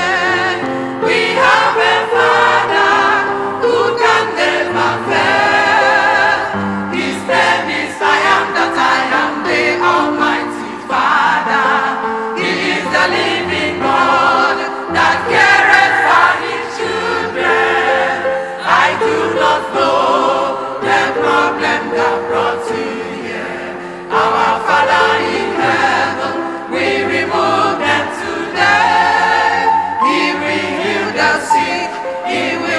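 Choir singing a gospel song with electronic keyboard accompaniment.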